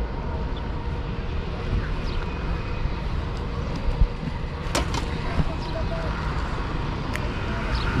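Steady background noise of road traffic with a low rumble, faint distant voices around the middle, and a few sharp clicks.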